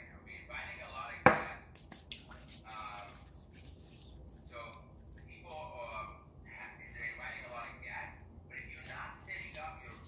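Quiet speech in the background, with one sharp click a little over a second in.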